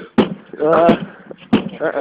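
Two sharp knocks about a second and a half apart: blows struck against the side window glass of a BMW 735i, with short voices in between.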